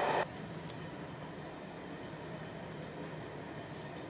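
Passenger train of the Eastern Express running steadily, heard from inside the carriage: a quiet, even running rumble with a faint low hum.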